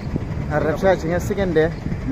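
A man talking, with a steady low rumble of road traffic underneath.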